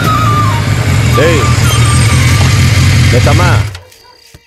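Motorcycle engine idling with a loud, steady low hum under background music, then cut off suddenly near the end as the engine is switched off.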